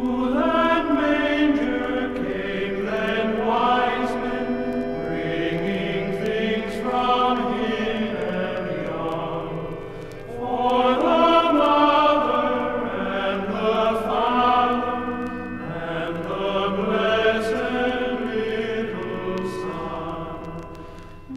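Choir singing a Christmas carol from a vinyl LP, sustained voices that dip briefly about halfway through and then swell again.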